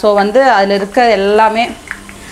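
Herbal hair oil sizzling steadily as leaves and vegetable slices fry in it in an iron kadai, stirred with a steel spoon, under a woman's louder talking. The sizzle is the water still cooking out of the leaves, which must be gone before the oil is ready.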